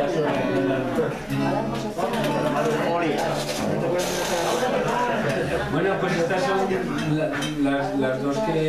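Several voices talking over one another, too mixed to make out words, with a brief hiss about four seconds in.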